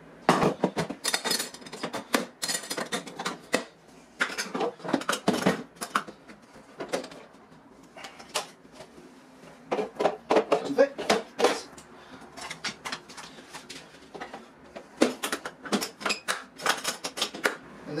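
Hard plastic toolbox parts clattering as they are handled: the lids, latches and organizer bins of a Husky Connect rolling tool system, with runs of clicks and knocks in several bursts and quieter gaps between.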